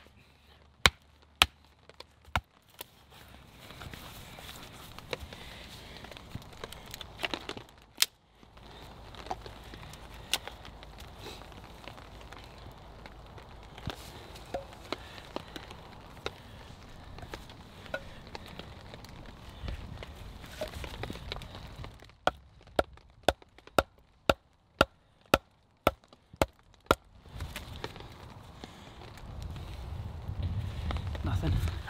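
Heavy survival knife chopping and splitting pine wood: sharp wooden knocks, a few early on, scattered ones through a stretch of rustling, then a quick run of about a dozen strikes near the end.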